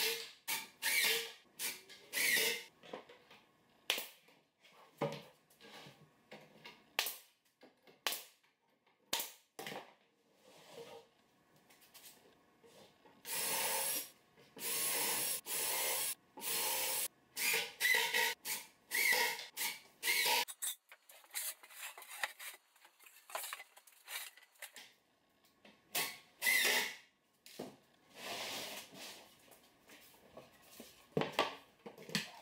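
Cordless drill driving screws through the side panels of a plywood cabinet box, in several runs of about a second each, with knocks and scrapes from the plywood panels being handled and pressed together between them.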